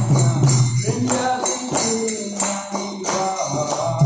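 Devotional singing accompanied by jingling hand percussion struck in a steady beat, over a low droning accompaniment.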